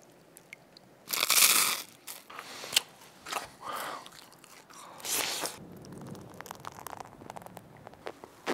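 Close-miked crunching of Weet-Bix wheat biscuits, starting about a second in with a loud crunch, then irregular bites and chewing that fade into quieter crackling.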